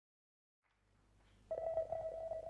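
Silence, then a faint low hum fades in. About one and a half seconds in, a single steady electronic tone starts suddenly and holds: the first held note of the band's live performance.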